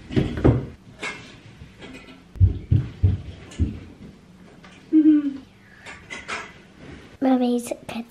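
Knocks and thumps of a netted Christmas tree being handled and set into its stand, a cluster of them about two and a half seconds in, with short bits of voices and a voice near the end.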